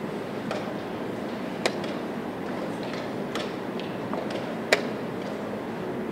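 Two sharp clacks about three seconds apart, with fainter taps between them, from blitz moves at a wooden chess board with a chess clock. Under them runs a steady background hall noise.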